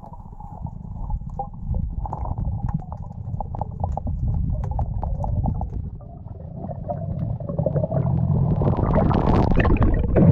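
Muffled underwater sound picked up by a submerged action camera: a steady low rumble of moving water with scattered short clicks. The sound grows louder toward the end, with a rushing swell about nine seconds in, as the net is drawn up toward the surface.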